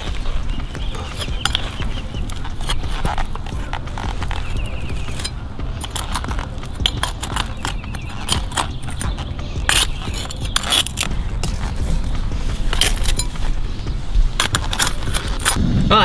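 Molten lava rock poured from a clay crucible onto blocks of dry ice, with irregular sharp crackles and clicks, thicker in the second half, over a steady low rumble.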